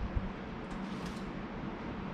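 Faint handling of a cardboard product box on a workbench, with one soft knock just after the start, over a low steady room hum.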